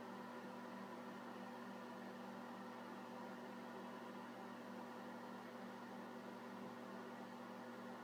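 Faint steady hum with even hiss, unchanging throughout.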